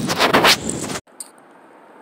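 Loud scraping and rustling on a phone's microphone as the phone is handled, cutting off abruptly about a second in to a faint hiss.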